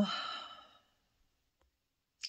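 A woman's breathy sigh trailing off the end of a spoken "um", fading out within about a second, followed by near silence.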